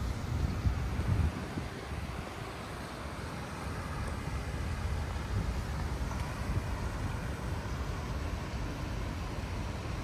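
Outdoor city background: wind buffeting the phone's microphone over a steady low rumble of distant traffic, with stronger gusts in the first second or so.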